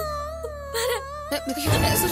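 Background score of a TV drama: a long held, slightly wavering melody line over a steady low drone. A brief spoken word cuts in, and near the end the music switches abruptly to a louder cue.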